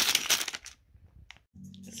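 Plastic zip-lock bag of toy building bricks crinkling and rattling as it is handled, stopping after about half a second, followed by a single click.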